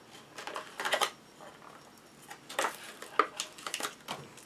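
Card-backed plastic blister packaging being handled and opened, giving a series of short clicks and crinkles in a few scattered clusters.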